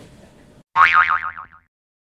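A cartoon "boing" sound effect: a springy tone with a wobbling pitch that slides downward and fades out within about a second.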